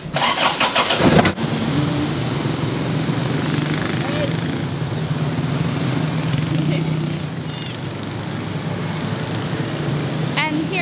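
Car door handle and door clatter for about the first second, then a steady low drone of an Isuzu Crosswind's engine and road noise as the vehicle drives, heard from inside the cabin.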